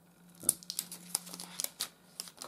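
Thin protective plastic film crackling and crinkling as it is peeled off a new laptop power adapter and handled, in a run of sharp uneven crackles starting about half a second in, the first the loudest.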